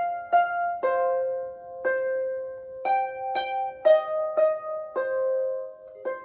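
A Stoney End Ena double-strung lever harp played slowly as a solo improvisation. Single plucked notes come about every half second to a second, each left to ring and fade over a low note that keeps sounding beneath them.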